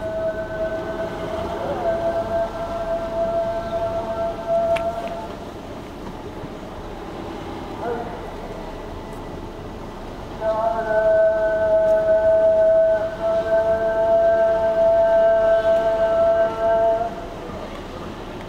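Islamic call to prayer (adhan) sung by a muezzin in two long held phrases, the second louder, with a quieter pause between them.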